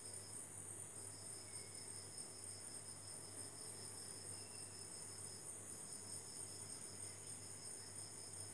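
Faint, steady, high-pitched insect trilling, with one pulsing trill that breaks off briefly twice. A low electrical hum runs underneath.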